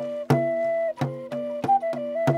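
A flute playing a slow melody of held notes over a steady low drone, with a hand frame drum beaten in a steady beat of about three strikes a second.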